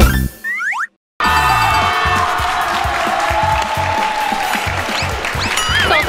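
A sharp hit, then a comic boing sound effect with a sliding pitch, a brief total silence, and from about a second in, upbeat background music with a steady beat.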